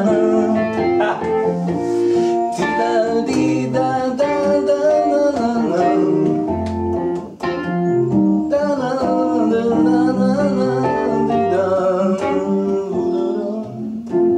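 A stage keyboard playing a song in a piano-like sound, with a voice singing along.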